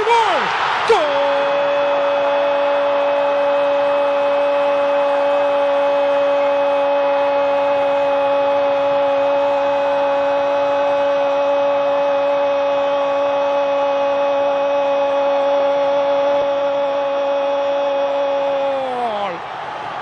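A Spanish-language football commentator's goal call: one long "Gooool" held at a steady pitch for about eighteen seconds, dropping off near the end, over stadium crowd noise.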